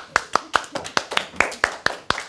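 A few people clapping hands in a small room, a light, even applause of about five claps a second after a child's poem reading.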